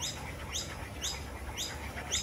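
A bird calling, repeating a short high rising chirp evenly about twice a second.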